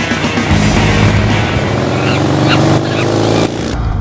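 Intro music with an engine revving over it, its pitch climbing for a couple of seconds before the sound cuts off shortly before the end.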